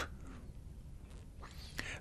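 Quiet background hiss in a pause between spoken sentences, with a faint breath from the speaker near the end before speech resumes.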